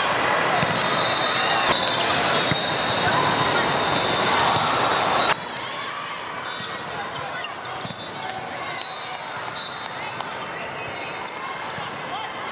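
Volleyball being played in a large hall: a din of many players' and spectators' voices, with the sharp smacks of the ball being hit. About five seconds in the sound cuts abruptly to a quieter, thinner din with scattered ball hits.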